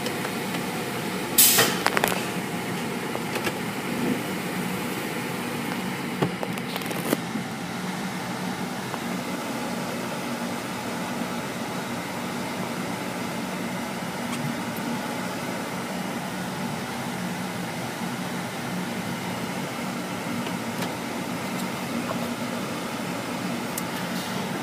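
Steady mechanical hum of tunnel car wash machinery, heard from inside a car's cabin, with a sharp knock about a second and a half in and a smaller one about seven seconds in.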